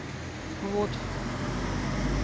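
Road traffic on a city street: a low engine and tyre rumble from a passing vehicle that grows louder toward the end.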